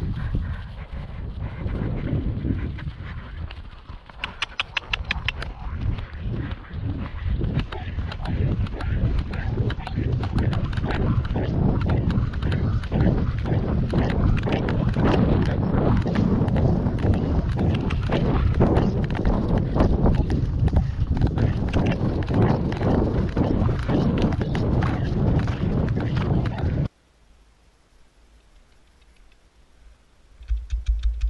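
Hoofbeats of a ridden horse moving over wet grass, a dense run of soft knocks with tack jingling, over a heavy low rumble of movement on the horse-mounted camera. The sound cuts off suddenly about three seconds before the end.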